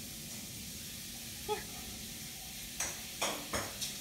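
A shower running: a steady hiss of spraying water. Near the end come four short sharp noises about a third of a second apart.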